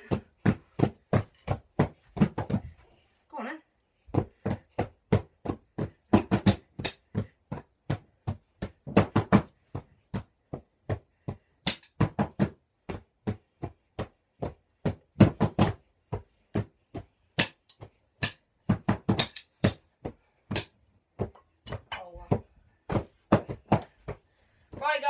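Drumsticks beating in an uneven rhythm of a few strokes a second, some strokes much louder than others, with a short pause early on: a beginner drumming freely.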